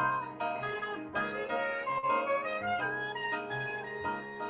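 A jazz duo playing live: piano with a sustained, slowly moving melody line over it.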